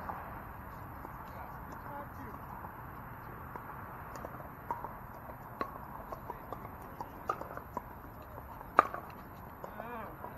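Pickleball paddles striking plastic balls: short sharp knocks at irregular intervals, several in the second half, the loudest just before nine seconds in, over a steady murmur of distant voices.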